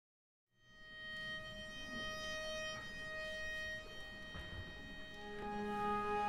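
Baroque string ensemble fading in after half a second of silence, quietly holding one high sustained note. About five seconds in, lower held notes enter and the sound swells.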